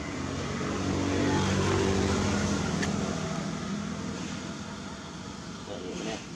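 A motor vehicle's engine passing by, growing louder over the first two seconds and then fading away, with one sharp click near the middle.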